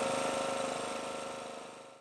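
An engine running steadily at idle, its level fading away toward the end.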